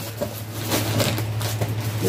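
Faint rustling and light knocks of items being handled and rummaged through, a few scattered short clicks, over a steady low electrical hum.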